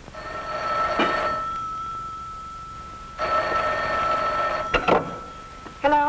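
A telephone bell rings twice, each ring lasting about a second and a half. The handset is lifted off the cradle with a clatter near the end of the second ring.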